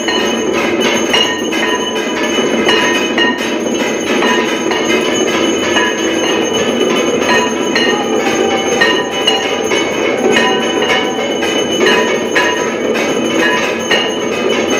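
Temple bells and metal percussion clanging continuously during aarti, a dense run of strikes with sustained metallic ringing.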